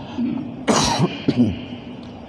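A man coughs once sharply, about two-thirds of a second in, then clears his throat with two shorter rasps.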